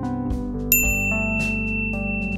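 Outro music with held notes, and a single bright ding sound effect about two-thirds of a second in that rings on for about a second and a half, like a subscribe-button bell chime.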